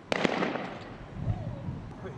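Explosive charge set off by the bomb squad at a suspicious package: a sharp bang, a second crack a moment later, then a long echoing rumble that fades away.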